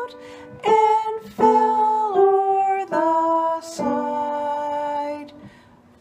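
Grand piano playing a simple beginner melody with both hands, a new note or chord struck about every three-quarters of a second and left to ring, dying away near the end.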